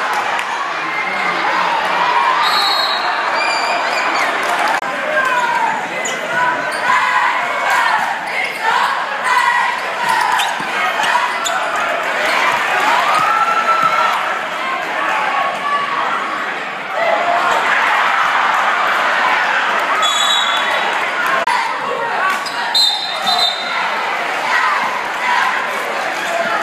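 Basketball being dribbled on a hardwood gym floor, with sneakers squeaking a few times and a crowd of spectators shouting and cheering, echoing in the large gym.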